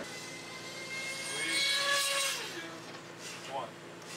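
A passing engine, swelling to a peak about two seconds in and then fading away, with a steady whine over a rushing hiss.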